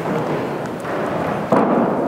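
A congregation rising to its feet: the rustle and shuffle of people standing up from their seats, with a sudden louder bump about one and a half seconds in.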